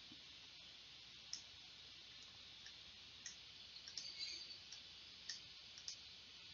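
Faint, scattered computer mouse clicks, about half a dozen, over quiet room hiss.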